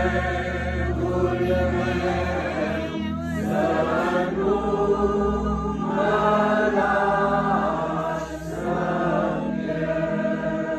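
A group of voices singing an Orthodox liturgical chant a cappella, in continuous phrases with brief breaks about three seconds in and near the end.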